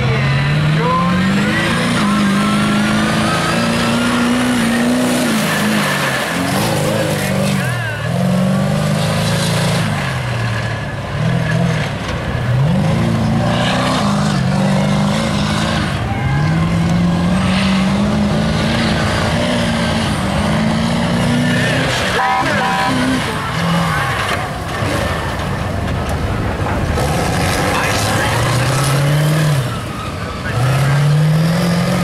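Diesel engine of a lifted old Chevy mega truck revving hard, climbing and dropping in pitch again and again every couple of seconds as it is driven around the course.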